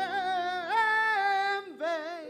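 Live band music in a slow song: a singer holds long notes with vibrato over a sustained keyboard chord, breaking off briefly near the end before the next phrase.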